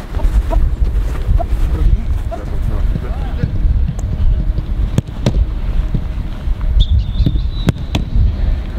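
Football being kicked and caught in a goalkeeper drill: several sharp thuds, mostly in the second half, over a steady low rumble.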